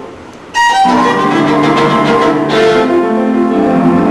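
Violin playing classical music: a soft fading note, then a loud bowed entry about half a second in that carries on in sustained notes.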